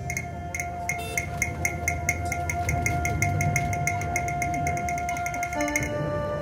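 Taiwanese opera accompaniment between sung lines: one long held instrumental note over evenly spaced sharp percussion strikes, about three a second, that speed up toward the end. Near the end the held note stops and lower notes take over.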